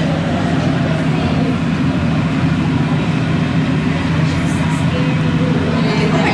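Steady low machine hum filling an aquarium viewing hall, with faint voices near the end.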